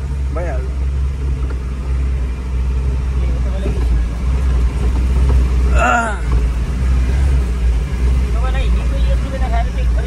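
Tata truck's diesel engine running steadily with a low drone, heard from inside the cab on a rough dirt road. Brief voices break in a couple of times, the loudest about six seconds in.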